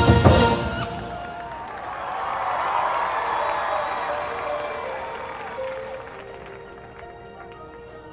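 A marching band's loud brass-and-percussion hit that cuts off about a second in, followed by stadium crowd applause and cheering that slowly fades. Near the end, soft sustained notes begin a quiet, slow passage of the music.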